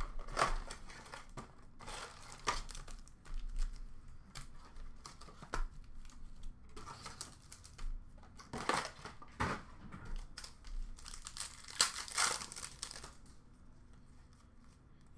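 Foil-wrapped hockey card packs from a cardboard blaster box being handled and opened: irregular crinkling and rustling of the wrappers, with tearing as a pack is ripped open.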